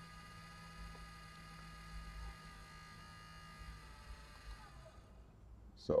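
Colido 3.0 3D printer making its unexplained idle noise after switch-on, a faint steady hum with a high whine, before a computer is connected. It dies away about four to five seconds in, as the USB connection to the controlling computer is made.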